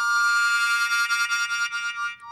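Harmonica played into a microphone, one held chord that sounds steadily throughout.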